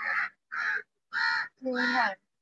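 A crow cawing four times in quick succession, about two harsh caws a second.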